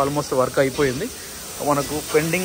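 A man talking, with a short pause about a second in, over a steady background hiss.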